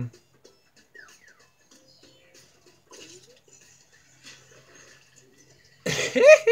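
Faint cartoon soundtrack from a television: quiet music and scattered sound effects. A sudden loud burst comes near the end.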